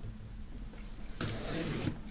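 Knife blade slitting the clear plastic film wrapped around a cardboard box: a soft hiss that starts a little over halfway through.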